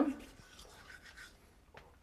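Faint scratchy scrubbing of manual toothbrushes on teeth, with a small click near the end.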